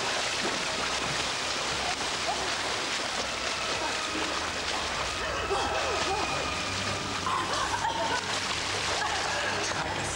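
Water splashing and sloshing in a swimming pool as people thrash about in it, a steady wash of water noise with indistinct voices calling over it.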